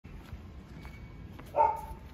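A dog barks once, loudly, about one and a half seconds in.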